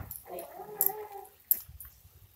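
A dog whimpering faintly, a wavering whine for about the first second, with a single sharp tap about one and a half seconds in.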